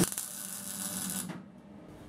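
MIG welder laying a short bead: the arc starts with a sharp pop and then crackles and hisses over a low hum, stopping a little over a second in.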